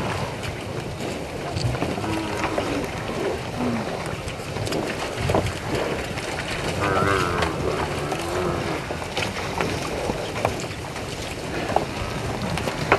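African buffalo herd calling: several short moo-like calls, some arching or rising in pitch, about three, seven and eight seconds in, over a steady noisy background with scattered faint knocks.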